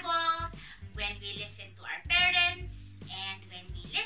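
A woman's voice speaking over soft background music that holds steady, sustained notes.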